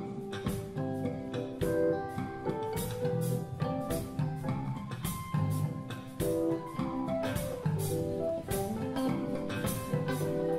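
Live band playing, with a drum kit keeping a steady beat under electric guitar, bass guitar and keyboard.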